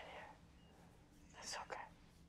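Faint whispered, breathy voice sounds over quiet room tone, with one short breathy burst about a second and a half in.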